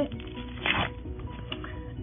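A small paper packet being torn open: one short rip of paper a little under a second in, over faint background music.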